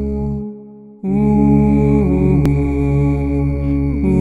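Music: a low steady drone under wordless voices holding long notes. It falls away briefly and comes back in about a second in, and the held notes slide down to new pitches around the middle and again near the end.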